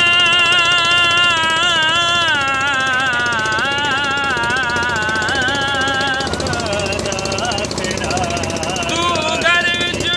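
A man singing unaccompanied in long, wavering held notes. The line loosens about six seconds in and a strong new note begins near the end, over a steady low rumble.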